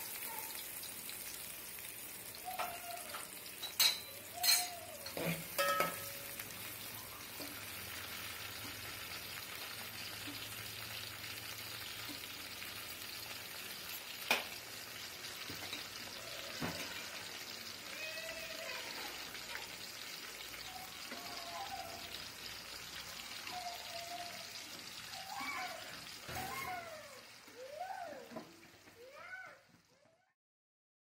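Sliced carrot, tomato and green chili frying in hot oil in an aluminium pot: a steady sizzling hiss. There are a few sharp knocks about four to six seconds in and another near the middle, and the sound dies away at the end.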